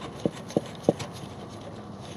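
Light metal clicks, three in the first second and fainter after, as a steel fuel line's flare nut is turned by hand into a new fuel filter.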